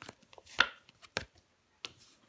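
Tarot cards being laid down on a wooden table: about four short, sharp taps, the loudest about half a second in.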